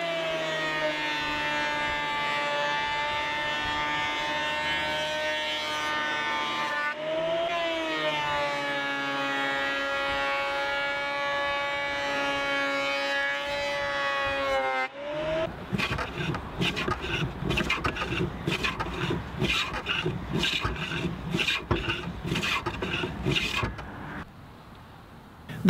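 Portable benchtop thickness planer running with a steady high whine as it cuts a rough pine post with nicked, worn blades. Its pitch sags briefly about seven seconds in, then recovers, and the motor stops about fifteen seconds in. A quick, irregular run of short strokes on the wood follows.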